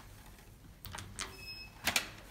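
Lift car machinery clicking as the lift is called into motion: a few sharp relay-like clicks, a short high electronic beep about halfway, and a louder click near the end as the lift sets off upward.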